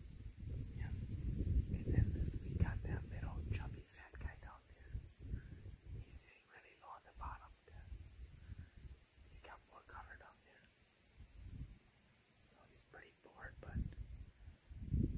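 Hushed whispered talk, with a low rumble on the microphone during the first few seconds.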